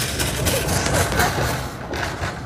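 Steady mechanical rumble of an inclined moving walkway carrying a shopping cart.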